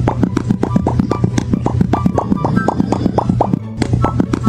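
Rapid cartoon mouth-pop sound effects of the Pop Cat meme, about seven short pops a second, over background music with a steady low bass.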